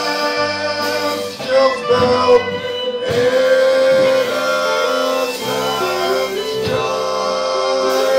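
Live Celtic folk band playing a song: fiddle, acoustic and electric guitars, electric bass and drum kit, with a voice singing over them.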